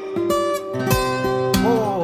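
A bouzouki played with plucked notes while a man sings a pop song along with it.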